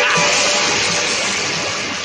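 Cartoon soundtrack music mixed with a loud rushing effect of molten wax pouring, the whole fading down steadily.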